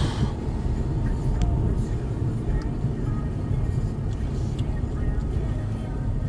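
Road and engine noise inside a moving car's cabin: a steady low rumble from tyres and engine while cruising.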